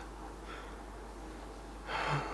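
A man's close-miked breathing in a pause between phrases, over a low steady hiss. A faint breath comes about half a second in, and an audible intake of breath near the end.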